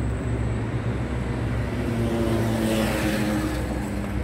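Motor traffic: a steady low engine hum, with a vehicle passing and swelling briefly a little past halfway.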